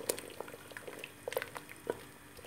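Wooden spoon stirring a steaming, bubbling stew in a metal pot: liquid sloshing with a few short, light knocks and clicks of the spoon against the pot.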